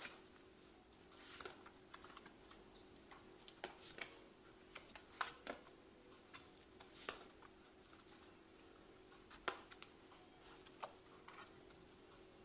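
Faint, irregular clicks and taps of tarot cards being handled, about ten over the stretch, with a faint steady hum underneath.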